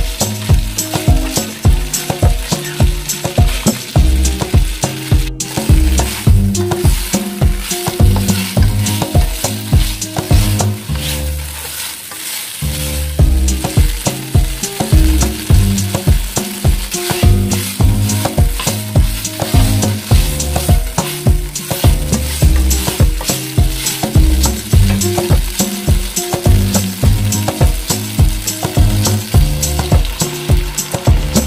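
Pork ribs sizzling as they fry in oil in a nonstick wok, turned now and then with a spatula. Background music with a steady beat runs over it, with a brief drop in the bass about twelve seconds in.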